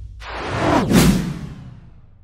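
Whoosh sound effect for an animated logo reveal, sweeping downward in pitch as it swells to a peak about a second in, then fading away.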